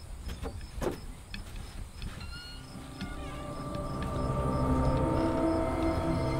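A few footsteps on wooden porch steps in the first two seconds, then a low sustained drone of horror film score swelling in and growing louder.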